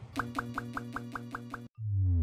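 Logo intro sound effect: a quick run of about eight bright, bouncy notes, each with a short upward blip, over a low steady tone, cutting off suddenly. Just before the end, a loud deep tone begins sliding down in pitch.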